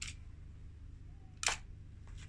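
A low steady rumble from the car, with two sharp clicks as its tyre presses against the objects on the ground: a faint one at the start and a louder one about a second and a half in.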